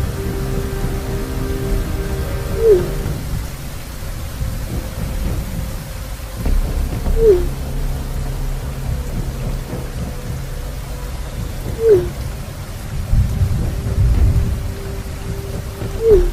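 Storm ambience sound effect: a continuous low rumble with rain and thunder, swelling louder about two thirds of the way through, under a low musical drone that fades out about three seconds in. A short falling blip sounds four times, each as a new text-message bubble pops up.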